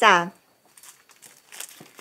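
Thin plastic bag crinkling as a bundle of sticky rice wrapped in it is handled, faint at first and busier near the end.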